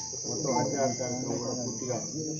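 A man giving a speech, with a steady, unbroken high-pitched drone of crickets behind him.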